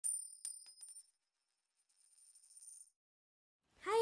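Bright metallic chime: a few quick strikes in the first second, ringing at several high pitches and fading. A faint shimmer follows, and it dies out about three seconds in.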